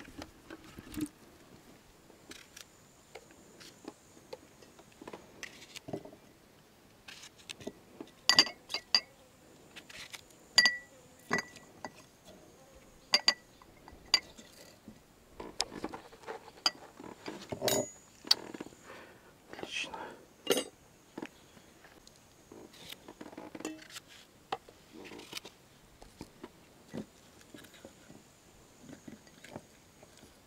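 Irregular sharp clinks of glass jars and a metal spoon knocking against glass as cucumbers are packed into jars. The clinks are loudest and most frequent from about eight to twenty-one seconds in, some of them ringing briefly.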